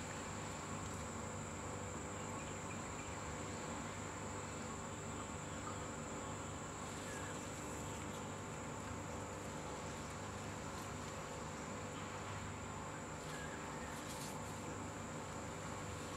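Insects droning steadily outdoors: one constant high-pitched tone that holds without a break, over a faint even background hiss.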